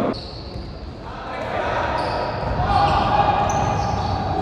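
Game sound of an indoor futsal match echoing in a sports hall: the ball being kicked and bouncing on the court, shoes squeaking on the floor and players calling out.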